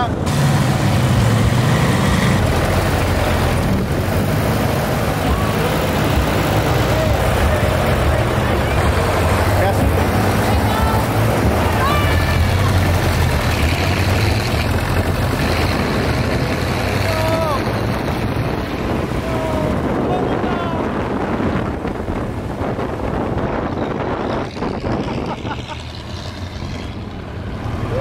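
Engine of a 98-year-old open baquet race car running during its first sprint run down the course, a steady low drone under road and air noise, easing off near the end.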